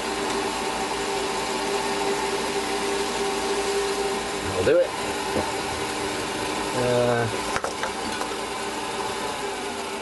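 Metal lathe running with a steady multi-tone whine from its motor and drive as it spins an aluminium part in the chuck. A single sharp click a little after halfway.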